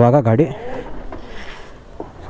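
A man's voice briefly at the start, then quieter background noise with faint knocks and a thin, very high-pitched tone near the end.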